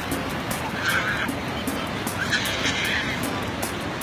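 A toddler squealing twice, briefly about a second in and again for longer near three seconds, over the steady wash of small waves breaking on the sand.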